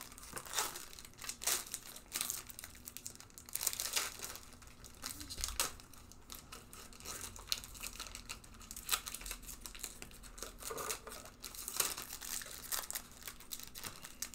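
Pokémon trading cards being flipped through and handled, with crinkling of the foil booster-pack wrappers: a run of irregular short rustles and crackles.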